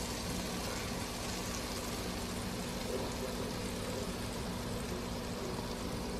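Steady low hiss with a faint hum beneath, as a freshly roasted pork loin's juices sizzle in its hot foil-lined pan.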